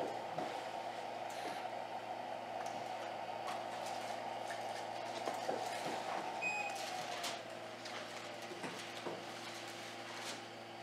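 A motor's steady hum that winds down, sinking in pitch, after a short electronic beep about six and a half seconds in, with faint paper rustles and small clicks.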